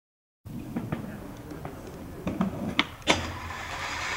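Skateboard on concrete at the top of a stair set, with a low rolling rumble and several sharp clacks of the board. It begins after half a second of silence.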